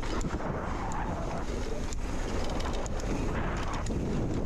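Wind rushing over the microphone of a mountain bike descending a dirt trail, with the knobby tyres rolling on hardpacked dirt and a few light clicks and rattles from the bike.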